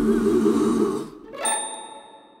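The song's last sustained chord fading out, then a single bright bell-like ding about a second and a half in, which rings on and slowly dies away.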